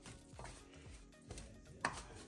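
A hand mixing and squeezing dough in a stainless steel bowl: soft rubbing with a few light knocks against the metal bowl, the sharpest close to the end.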